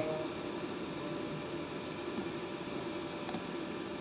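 Steady machine hum with a hiss, and one faint click about three seconds in.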